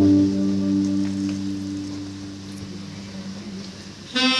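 Live band music: a low sustained chord holds and slowly fades away, almost dying out by the end.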